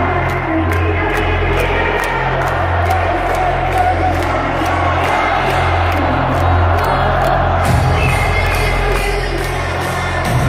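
Techno played loud over a stadium sound system, with a steady bass line and an even ticking beat, while a large crowd cheers and whoops over it.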